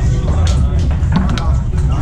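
Foosball ball clacking sharply against the plastic men and table walls a few times, over background music and voices in the room.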